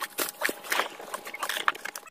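Rummaging and handling noise in a car interior: irregular clicks, taps and rustles as things are moved about during a search, with a faint steady tone underneath.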